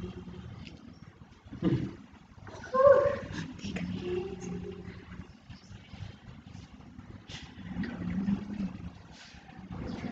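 Quiet, indistinct voices murmuring in a room, with a few short clicks and rustles.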